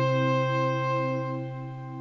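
Background music: a held chord of sustained tones with a slow pulse in its lower notes, fading out gradually.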